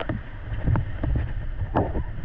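Whitewater rapids rushing around an inflatable raft, with wind buffeting the action-camera microphone and several sharp splashes as the raft bucks through the waves.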